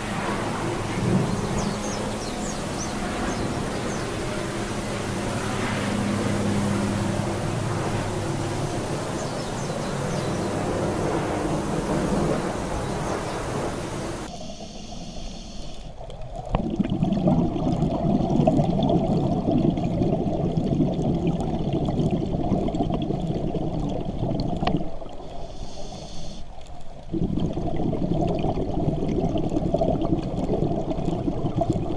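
Lava fountaining and flowing through burning forest: a steady, rumbling, noisy roar. About halfway through it cuts off abruptly to a duller sound with a dense low crackle.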